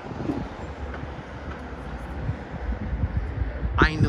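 Steady low rumble of outdoor city ambience, with no distinct events; a man's voice begins just at the end.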